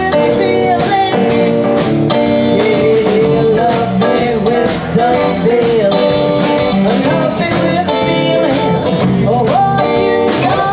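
Live electric blues band playing: a woman singing over electric guitars and a drum kit.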